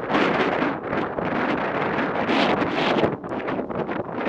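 Wind rushing and buffeting over the microphone of a camera on a moving motorcycle, loud and gusty, easing a little about three seconds in.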